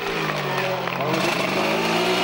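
Honda 250cc two-stroke race bike's engine running hard in one held note, its pitch easing down slightly at first and then holding steady.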